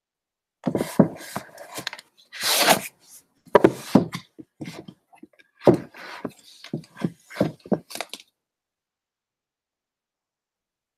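Books being moved on a shelf: a string of knocks and thuds as they are set down and pushed into place, with a brief sliding scrape about two and a half seconds in. It stops after about eight seconds.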